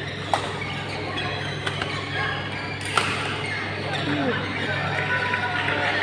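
Badminton rackets striking a shuttlecock in a doubles rally: sharp hits a little over a second apart, the loudest about three seconds in. Behind them are a steady hall hum and background voices.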